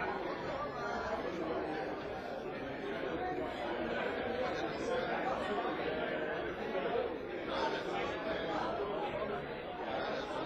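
Many overlapping conversations in a large room: a steady murmur of indistinct crowd chatter with no single voice standing out.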